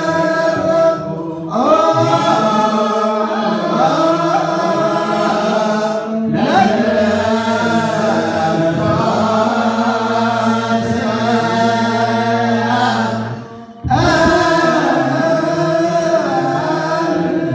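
Group of male Ethiopian Orthodox clergy singing mahlet, the church's liturgical chant, together in long drawn-out lines that glide in pitch. The singing breaks off briefly about a second in and again near the end before resuming.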